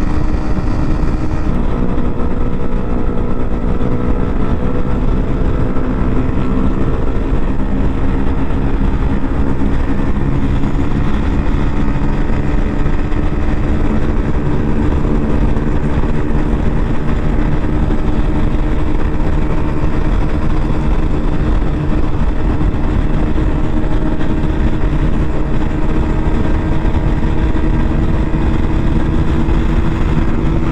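Honda RS150R's single-cylinder engine held at high revs at speed, its pitch climbing slowly and steadily as the bike builds toward top speed, over a steady rush of wind noise.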